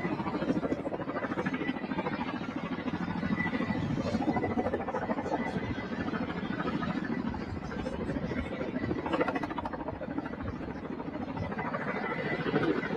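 Outdoor ambience of indistinct distant voices mixed with steady vehicle noise.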